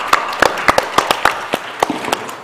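Audience applause: many separate, irregular hand claps rather than a dense wash, from a modest number of people clapping at the end of a speech.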